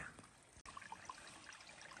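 Near silence, with a faint trickle of running water.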